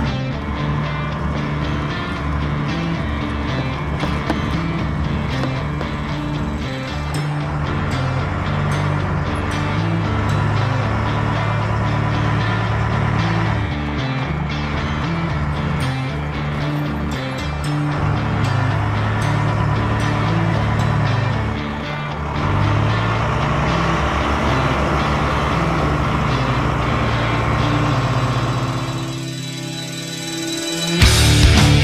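Background music with a bass line that changes notes every half second or so, dipping briefly near the end.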